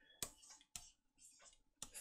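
Near silence broken by a few faint, short clicks.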